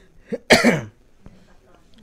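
A man coughs once, loud and sudden, about half a second in, with a short throat sound just before it.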